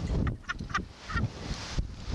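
Wind rushing over the microphone as a slingshot ride flings its riders, with a few short, high laughs and squeals from the two riders in the first second or so.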